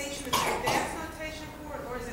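A person coughing briefly, about half a second in, amid faint speech in a hall.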